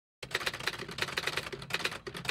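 Typewriter sound effect: rapid keystroke clicks, about six a second, starting a moment in, as the letters of a title are typed out.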